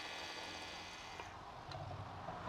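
Electric servo tapping arm running faintly as it drives a tap into a hole in a fixture plate: a low steady hum with a thin high motor whine that fades about a second in, and a couple of tiny ticks.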